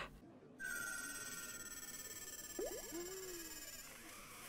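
Faint sustained high ringing tone from the anime's soundtrack, starting about half a second in and fading slowly, with a few short sliding low sounds about two and a half to three and a half seconds in.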